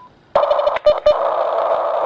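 A loud burst of digital radio noise heard through a radio receiver as a Kirisun S780 transmits a dPMR digital call: it begins a moment in with a few clicks, then a steady hiss with a buzz in it, running just under two seconds.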